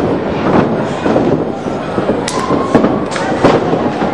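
Wrestlers' bodies slamming onto the ring canvas: about half a dozen sharp thuds and slaps in quick succession, over steady crowd noise.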